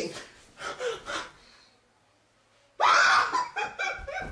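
A girl's voice without words: a couple of breathy gasps, a second of near silence, then a sudden loud, high-pitched shriek about three seconds in that trails off.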